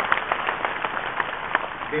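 A large crowd applauding, with dense clapping that thins out toward the end.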